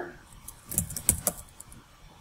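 A quick run of clicks on a computer keyboard starting about half a second in and lasting under a second: keystrokes typing a new ticker symbol into the trading platform.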